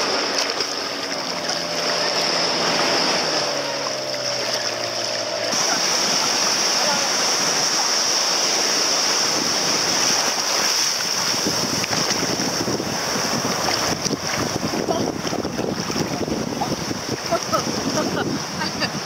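Sea water sloshing and surf breaking around a camera held at the water's surface, choppier with small splashes in the second half. A motorboat engine hums under the water sound for the first five seconds.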